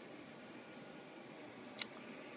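Faint steady hiss of room noise, with one sharp click near the end.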